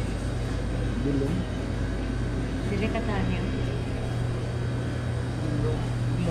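Café room sound: a steady low hum with faint voices of other customers in the background.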